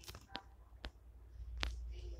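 A few sharp clicks or taps, four in two seconds, with a low rumble swelling in the second half.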